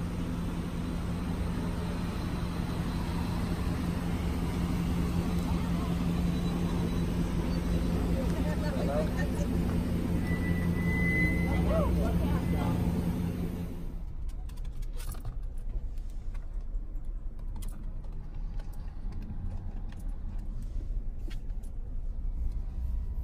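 Car engines idling, a steady low hum with faint voices over it and a brief high tone about eleven seconds in. About fourteen seconds in it cuts suddenly to a quieter low hum from inside a moving car, with scattered clicks.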